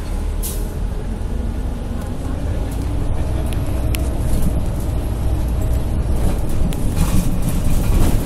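Inside a moving city bus: steady low rumble of the engine and road noise, slowly growing louder.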